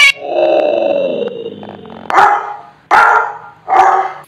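A recorded dog sound clip played back by a phone app: a drawn-out growl falling in pitch, then three sharp barks.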